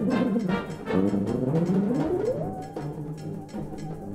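A brass band playing: short repeated chords with cornets prominent, then about halfway through a brass line slides smoothly up and holds a high note over the band.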